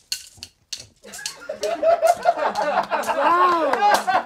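Several people laughing together, overlapping and loud from about a second in, after a few short sounds in the first second.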